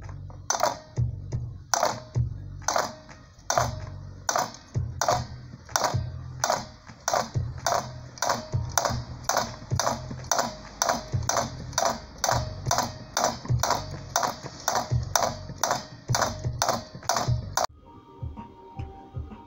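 A coil winder turning as enamelled copper wire is wound onto a PVC tube, giving sharp, regular clicks about two a second. Background music plays underneath.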